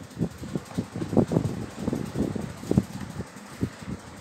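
Handling noise on a hand-held phone microphone: irregular low bumps and rumbles, several a second.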